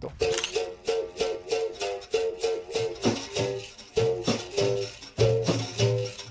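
Berimbau being struck in a quick, even rhythm of twangy notes, with a rattling shake on the strokes. A deeper note joins about five seconds in.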